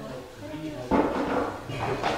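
Quiet, indistinct voices in the room, as if audience members are murmuring answers, with a brief knock about a second in.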